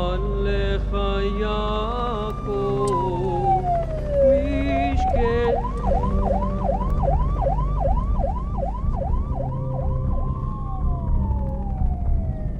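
Emergency-vehicle sirens: one wails slowly up and down, then from about five seconds in a fast yelp repeats about three times a second, before the wail returns. In the first two or three seconds a man's chanted prayer sounds over it, with a low drone underneath.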